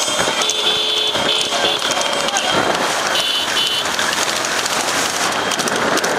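Running horse-cart race heard from among the following motorcycles: a steady rush of engine and wind noise with men's voices shouting. A high steady tone sounds twice, once near the start and again about halfway through.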